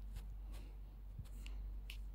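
A few faint, short clicks spaced irregularly, from fingertip taps on a phone's touchscreen and on-screen keyboard, over a low steady hum.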